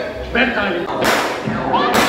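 Two blank gunshots from the stunt actors' guns, sharp cracks about a second apart, the second near the end, with shouting voices in between.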